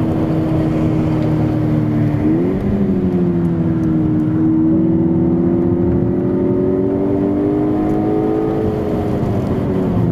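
Volkswagen Golf GTI Edition 35's turbocharged four-cylinder engine pulling hard on a racetrack, heard inside the cabin. Its note jumps up sharply about two seconds in, then climbs slowly as the car accelerates, easing off near the end.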